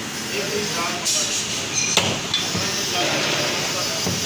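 A butcher's cleaver striking a wooden chopping block once, sharply, about two seconds in, with a couple of lighter knocks around it. Voices talk in the background.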